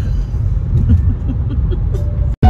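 Steady low road and engine rumble inside the cabin of a moving car, with a woman laughing softly over it.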